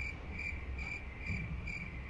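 A short high-pitched chirp repeating evenly about four times a second, like a cricket, over a faint low hum.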